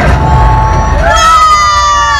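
Loud low rumble from a Millennium Falcon motion-simulator ride's soundtrack during a hyperspace jump. About a second in, a long high wailing tone rises sharply and then slowly falls.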